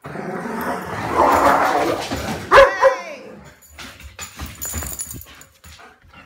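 Dogs playing together at close range: a rough growly stretch, then one loud, sharp bark about two and a half seconds in, followed at once by a short falling whine. Lighter scattered sounds follow.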